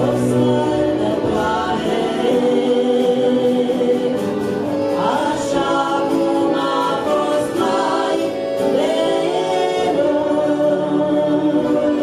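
A Romanian Christian song, sung by several voices together over a musical backing.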